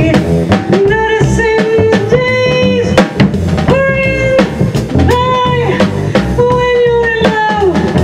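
Live jazz combo of violin, upright bass and drum kit playing: a melody of held notes that slide between pitches over walking bass and steady drums with rimshots.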